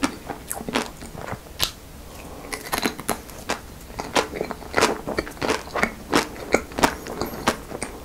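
Close-miked biting and chewing of a Magnum Mini White ice cream bar, its white chocolate coating cracking in many short, crisp crackles. There is a brief lull about two seconds in.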